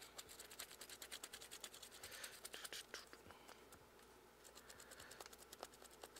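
Faint, rapid scratching of a dry paintbrush stroked back and forth over a primed foam claw, dry brushing paint onto its textured surface. The strokes stop for about a second past the middle, then start again.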